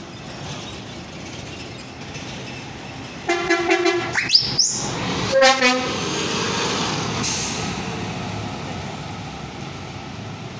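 A city bus's newly fitted horn, which the uploader takes for a ship-type horn, sounding loud short blasts about three and a half seconds in and again near the middle as the bus passes close by. The bus's running noise follows and fades as it moves off.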